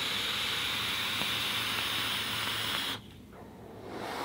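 Steady airy hiss of a long draw on a dual-18650 squonk box mod: air pulled through the atomiser while the fired coil vaporises e-liquid. It cuts off about three seconds in, and a faint, soft exhale of vapour follows near the end.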